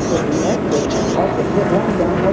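Indistinct voices, likely team radio chatter, over steady race-track background noise.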